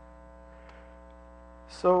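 Steady electrical mains hum with many evenly spaced overtones, under a pause in speech; a man says "So" near the end.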